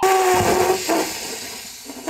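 A sudden loud rushing hiss with a brief tone at its start, fading away over about two seconds.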